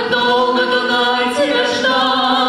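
A woman and a man singing a slow waltz song in duet, holding long notes, with vibrato on the held note near the end.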